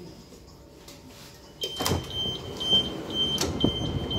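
London Overground Class 378 train's sliding passenger doors opening: a sudden clunk about a second and a half in, then the high door beeps repeating about twice a second, with a few knocks.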